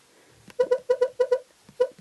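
Key-tap sounds from the 30/30 timer app's on-screen number pad on an iPad: short, identical pitched blips, about eight in quick succession and one more near the end, one for each key pressed while entering a task's duration.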